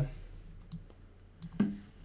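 Computer mouse clicking twice, light and quick, as a chess move is entered, followed near the end by a short low voiced murmur.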